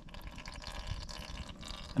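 Warm, thin engine oil pouring in a faint, steady trickle from a tipped Honda EU20i generator's dipstick drain hole into a drain pan. The engine was run first to warm the oil so that it pours freely.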